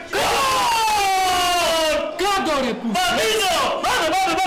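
Several men yelling together in celebration of a goal: one long shout falling slowly in pitch over the first two seconds, then shorter overlapping shouts.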